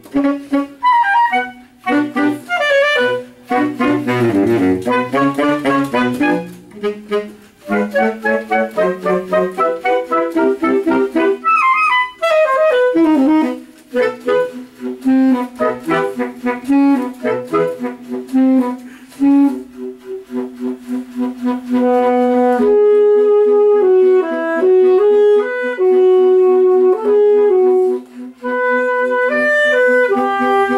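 Saxophone quintet playing together: quick, busy interweaving lines for the first two-thirds, then longer held notes over a steady low note near the end.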